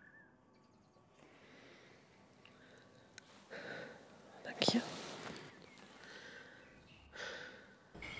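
A person breathing audibly in slow, breathy swells, with a sharp, louder catch of breath about halfway through and another breath near the end.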